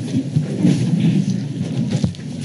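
A room of people sitting back down after standing: chairs scraping and bodies shuffling, heard as a steady low rumble with scattered small knocks.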